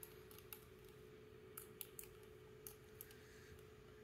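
Near silence, with a few faint, scattered clicks and taps from handling tiny plastic pieces, over a faint steady hum.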